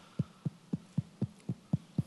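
Regular low thumps, about four a second, over a faint steady hum.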